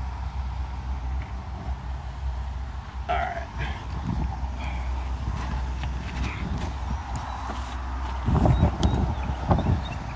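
Phone microphone handling noise over a steady low rumble. In the last two seconds there are louder thumps and scuffs as the phone is brought up from under the car and the holder moves on his feet.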